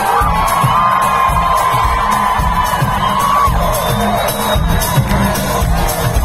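Live pop music played over an arena sound system, heard from among the crowd: a dense, pumping bass beat with a long high note held for about three seconds near the start.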